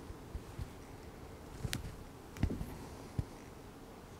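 Faint handling sounds at a fly-tying vise: a few soft taps and clicks as the thread bobbin is worked around the hook, over quiet background noise.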